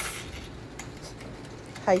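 Mechanical timer knob of an electric countertop oven being turned to set the cooking time, with faint clicks.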